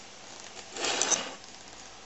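A brief metallic clatter of small steel parts, with a sharp clink about a second in.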